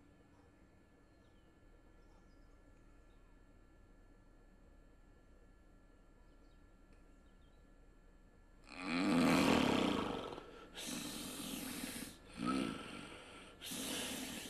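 A sleeping man snoring: quiet at first, then about nine seconds in a long loud snore, followed by several shorter snores.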